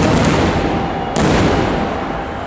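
Aerial firework shells bursting overhead: a loud boom right at the start and a sharper one just past a second in, each followed by a long rolling echo.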